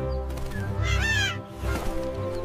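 A cartoon bird gives one short, wavering squawk about a second in as it takes off, over steady background music.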